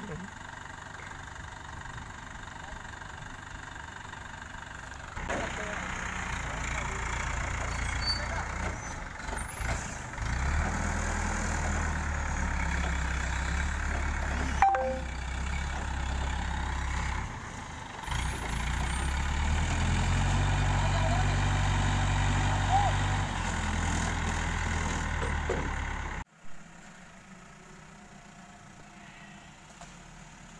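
Diesel engine of an ACE 12XW pick-and-carry crane running, its speed raised in steps to a higher, steady level while it works the boom to handle timber logs. The sound cuts off suddenly near the end, leaving a much quieter outdoor background.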